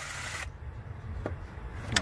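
DeWalt cordless driver spinning a tight bolt out through a long socket extension, stopping about half a second in. A faint click follows, then a sharper click near the end.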